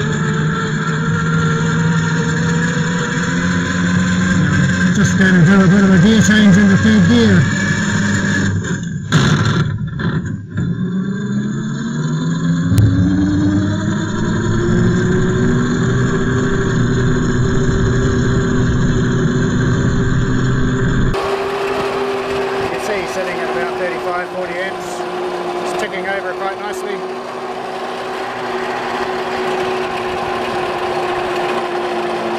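David Brown 880 tractor converted to electric drive, running along in second gear: a steady whine from the electric drive motor and transmission. Its pitch dips briefly about ten seconds in, then rises and levels off as it picks up speed, and the sound changes abruptly about two-thirds of the way through.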